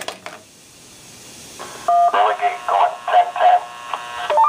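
Handheld two-way radio's speaker playing back a transmission, typical of a simplex repeater replaying what it recorded. After a few key clicks and a hiss, a short two-tone DTMF beep sounds about two seconds in, followed by a thin, narrow-band voice over the radio.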